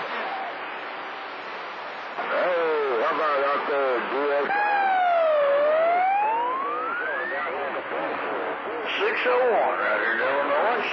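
CB radio receiving distant skip on channel 28. Static hiss gives way to broken, hard-to-follow voices. In the middle, a whistling tone dips and then sweeps steadily upward over about three seconds before more voices break in.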